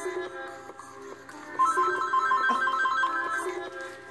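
Background music, joined about one and a half seconds in by a louder mobile phone ringtone: a quick repeating pattern of high notes.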